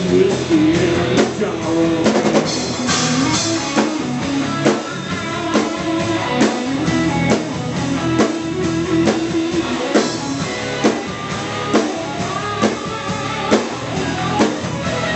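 Live rock band playing: distorted electric guitars over bass guitar and a drum kit keeping a steady beat, with a drum hit a little under once a second.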